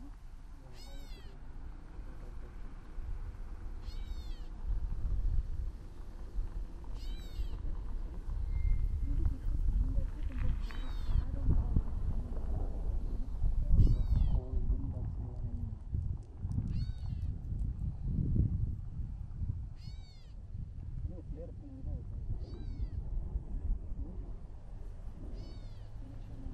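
A bird repeating the same short call, a note that rises and falls, about every three seconds, nine times in all, over a low, gusting rumble of wind.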